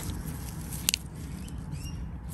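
A single sharp click about a second in as a smooth garden stone is lifted and knocks against another stone, with light handling rustle of the stones and leaf litter.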